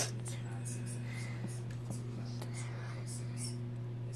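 Marker tip rubbing on a cotton t-shirt in short, repeated scratchy strokes as a drawing is shaded in, over a steady low hum. A brief knock comes at the start.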